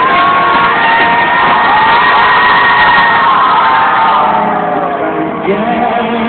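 Live rock band playing, with a long wavering held note over the music for the first few seconds and a crowd cheering and whooping; the sound eases off about four seconds in before the band carries on. Heard from within the audience.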